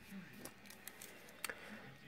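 Faint handling noise: a few soft, scattered clicks and rustles as a firework canister shell is lifted and handled.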